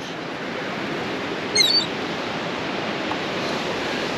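Steady wash of ocean surf and wind, with one short, high-pitched seagull call about a second and a half in.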